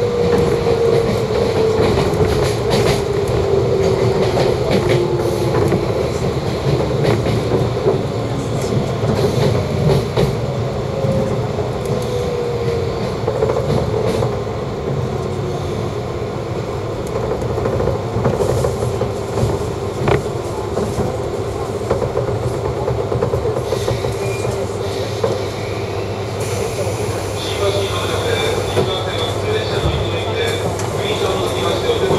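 Running noise heard inside the passenger cabin of a JR East 185-series electric train under way: continuous wheel-and-rail noise with a motor hum that slowly falls in pitch over the first half. A thin high whine joins near the end.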